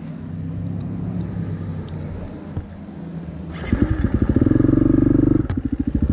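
Dirt bike engine idling steadily, then about three and a half seconds in it gets sharply louder with a brief rise in pitch and runs on in a fast, even pulsing.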